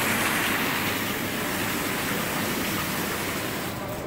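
Indoor rain-curtain waterfall: thin streams of water falling from the ceiling and splashing into a basin, a steady hiss of falling water that eases slightly near the end.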